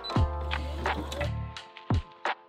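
Background music: a beat with sharp drum hits about every half second over held bass and chords. The bass drops out near the end.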